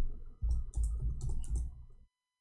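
Typing on a computer keyboard: quick runs of keystrokes with dull thumps through the desk, pausing briefly about half a second in.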